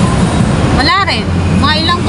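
Steady low rumble of city road traffic, with an engine-like hum running underneath, and two brief snatches of voice in the middle.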